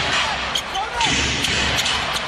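Arena crowd noise during live play, with a basketball being dribbled on the hardwood court.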